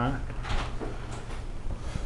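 A few short soft knocks and rustles from handling as the camera is swung about, over a low steady hum.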